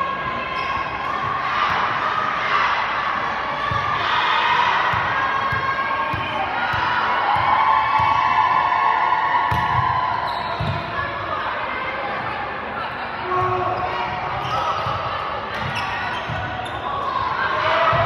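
Indoor volleyball rally: dull thuds of the ball being struck, a run of them between about four and eleven seconds in, under players calling out and spectators talking, echoing in a large gymnasium.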